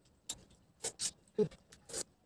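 Mouth sounds of a person eating pieces of a sour fruit dressed with chilli powder and salt: several short, separate smacking and sucking sounds, roughly half a second apart.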